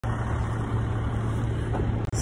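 A steady low engine drone that holds an even pitch throughout.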